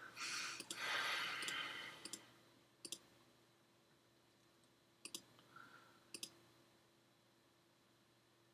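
Computer mouse clicking, single and doubled clicks spread over the first six seconds, as a video's timeline is clicked forward to skip ahead. A short soft hiss, the loudest sound, fills the first two seconds. All of it is faint.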